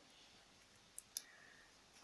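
Near silence broken by two faint, short clicks about a second in, a fifth of a second apart.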